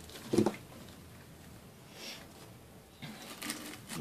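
Tabletop craft handling: a sharp click from a pair of wire cutters about half a second in, then faint rustling of artificial pine sprigs being handled near the end.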